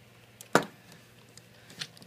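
A single sharp plastic clack about half a second in, then a fainter click near the end: the toy robot's large plastic gun being knocked and pulled free of the figure's hand.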